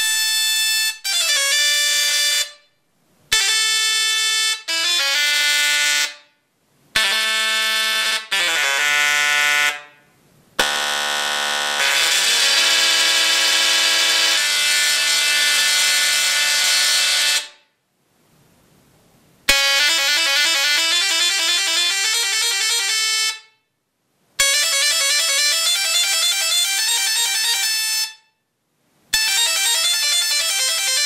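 Mini solid-state Tesla coil (SSTC) playing music through its sparks: buzzy, horn-like notes, several at once in harmony. The music comes in phrases of a few seconds each, broken by short silences.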